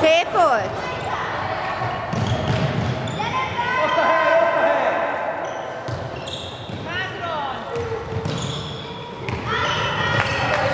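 Indoor handball game in an echoing sports hall: the ball bouncing on the wooden floor, sneakers squeaking in short bursts as players turn, and shouts from players and coaches.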